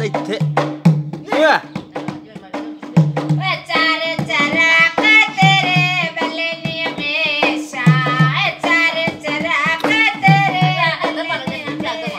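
A woman singing a folk song to her own dholak, a hand-played two-headed barrel drum, with deep bass strokes and sharper slaps in a steady rhythm. For the first few seconds it is mostly drum, then the singing comes in fully.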